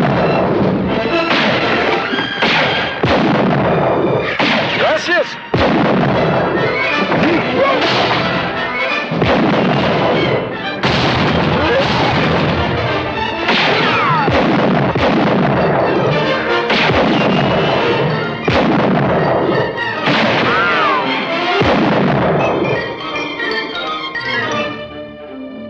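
Film soundtrack of a western gunfight: rifle shots, about one a second, over orchestral music.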